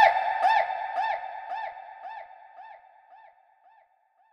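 A single pitched synth note with a quick up-and-down pitch bend, repeated by a delay echo about twice a second and fading away over about four seconds.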